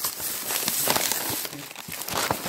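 Thin plastic grocery bag rustling and crinkling as a hand rummages inside it and pulls out a cardboard box, easing off near the end.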